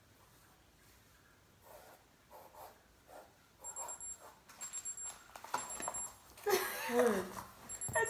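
A timer alarm beeping in short high-pitched bursts about once a second, marking the end of the drawing time. A voice cries out loudly over it near the end.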